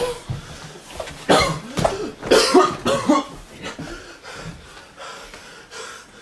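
A person making rough, breathy vocal sounds like coughing, in a cluster of bursts from about one to three seconds in, quieter afterwards.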